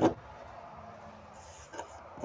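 Quiet room tone with a faint, brief brushing about one and a half seconds in: fingers rubbing across a slatted wood sound-dampening panel.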